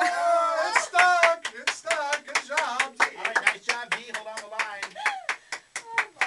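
Several people laughing loudly together, broken by quick sharp claps.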